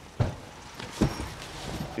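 Two soft thumps about a second apart as the padded fold-out bed cushion of a camper van is pulled up and set down on its slatted frame. A faint steady hiss lies underneath.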